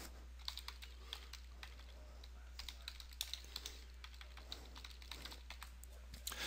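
Faint typing on a computer keyboard: irregular light key clicks, coming thickest around the middle.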